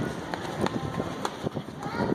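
Hurried footsteps on a hard store floor, a few irregular knocks a second, mixed with the rustle and knocks of a phone being carried while it films.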